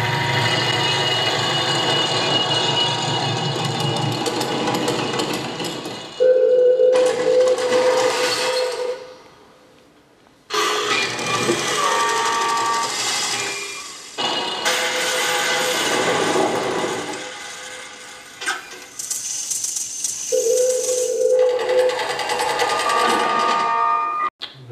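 Excerpt of a 1961 musique concrète tape piece built from recordings of tobacco-factory machinery: dense layers of mechanical clatter and whirring with a steady hum-like tone, cut into blocks that start and stop abruptly. The sound falls away about nine seconds in and bursts back suddenly a second and a half later.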